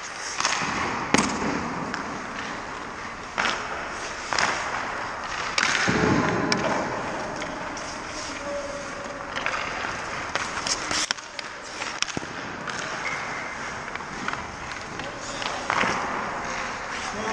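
Hockey skates scraping and carving on rink ice, with several sharp cracks of a stick striking the puck and the puck hitting the goalie's gear. The loudest stretch of scraping, about six seconds in, sounds like a hard stop spraying ice.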